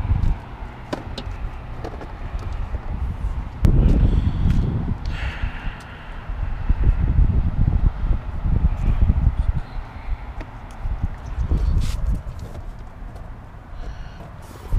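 Plastic door trim strip and car door panel being handled and pressed together, giving scattered light clicks and knocks, a louder thump about four seconds in, and a low, uneven rumble.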